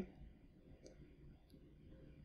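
Near silence: room tone, with two faint short clicks a little under a second apart.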